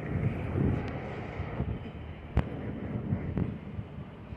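City street traffic with wind buffeting the microphone, plus a sharp click about two and a half seconds in and a fainter one a second later.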